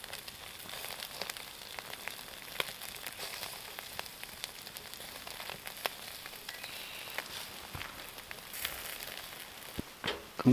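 Beef burger patties sizzling on a grill grate over hot charcoal, a steady hiss with scattered small pops and crackles.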